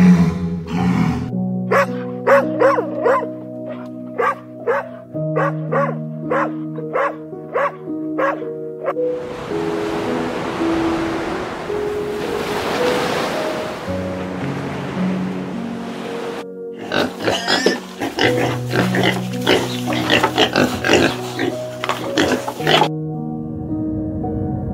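Soft background music with held notes throughout. Over it, sea lions bark about twice a second for the first nine seconds. Then comes about seven seconds of steady surf hiss, and a second stretch of rapid, uneven animal calls near the end.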